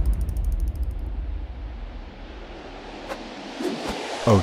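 Rapid, even ticking of a bicycle freewheel ratchet, stopping about a second in, over the fading low rumble of a deep boom.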